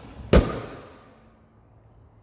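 Porsche 911 Carrera S front trunk (frunk) lid being pressed shut: one sharp thump about a third of a second in, ringing briefly as it fades.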